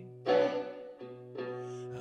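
Guitar accompaniment for a slow country ballad: two chords strummed, the first about a quarter second in and the second about halfway through, each left ringing between the sung lines.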